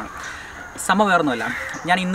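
A bird calling against a man's voice.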